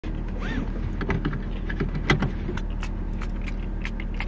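Seatbelt being pulled across and its metal tongue clicked into the buckle: scattered clicks and rattles, the loudest about two seconds in. A car's engine idles with a steady low hum underneath.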